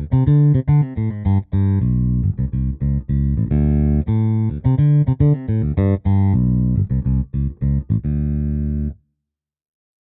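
Sampled J-style electric bass with roundwound strings (Evolution Roundwound Bass virtual instrument), playing a finger-style bass line of quick notes; it stops about nine seconds in.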